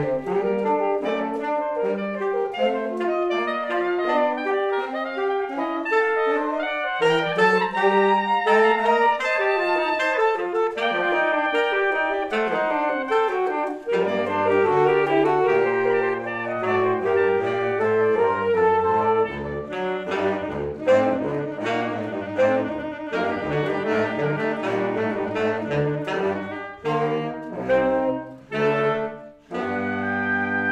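Saxophone quartet with soprano saxophone playing a busy passage of many quick notes in several parts. About halfway through a low bass part comes in, and near the end the playing breaks into short, detached notes.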